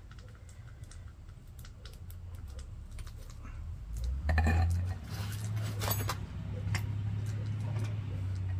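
Scattered light clicks and clinks of metal casting tools as molten copper is poured from a crucible into a coin mold. A low steady rumble underneath grows much louder about four seconds in.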